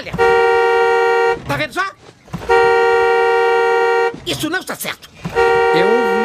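Car horn blowing three times, each blast a steady two-note tone lasting a second or more, with short breathy voice sounds in the gaps. The horn is set off by the driver's chest pressing on the steering wheel each time she breathes, her seat having been pushed too far forward.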